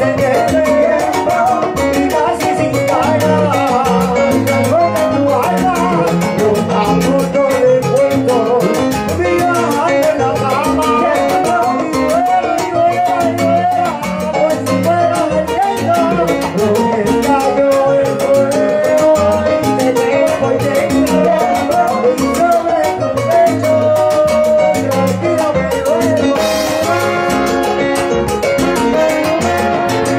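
Live salsa band playing: a lead singer and chorus singers over timbales, congas and a horn section, loud and continuous.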